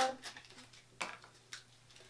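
Mascara packaging being opened by hand: faint handling noise with a short sharp click about a second in and a smaller one about half a second later.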